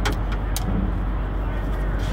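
Steady low rumble of an idling engine, with two faint clicks about half a second apart near the start.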